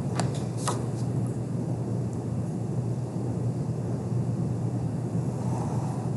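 A plastic set square tapped and slid into place on drawing paper: a couple of light clicks in the first second. After that, only a steady low hum.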